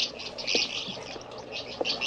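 Small birds chirping rapidly, a dense run of short high chirps.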